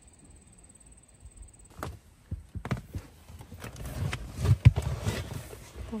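Footsteps walking over grass and pavement, with irregular bumps and rustle from a handheld phone. The steps start after a quiet couple of seconds and grow louder near the end.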